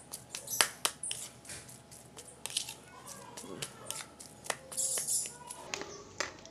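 Metal spoon scraping and clicking against a plate as it mashes crumbled fried tofu, in irregular strokes with a few sharper clicks.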